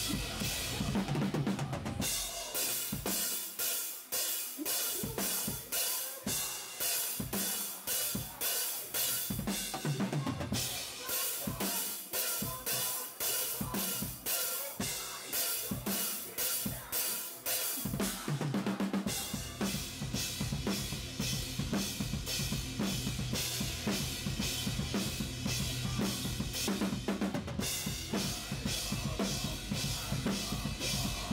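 Rock drum kit played hard and fast in a live metalcore song: steady kick drum, snare and cymbal strikes. The deep low end thins out about two seconds in and comes back fully after about nineteen seconds.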